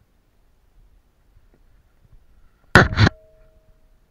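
Climbing rope brushing across the action camera's housing: a brief loud scraping burst in two quick pulses about three seconds in, followed by a faint steady hum that fades out just before the end.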